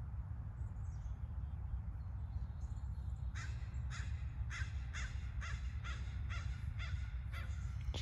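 A bird calling in a quick, even series of about ten short calls, roughly two a second, starting a little past three seconds in, over a steady low rumble.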